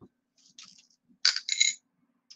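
Small metal jewelry pieces clinking together as they are handled and picked out of a jar: a faint clink about half a second in, then a louder pair of short ringing clinks.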